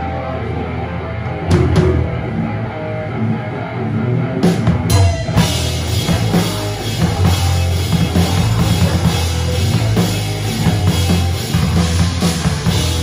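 Live rock band playing: electric bass, guitar and a drum kit heard close up. A held low bass note opens, drum hits come in, and from about five seconds the full band plays with crashing cymbals.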